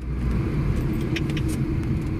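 Police patrol car driving, heard from inside the cabin: a steady engine and road rumble, with a few faint ticks a little over a second in.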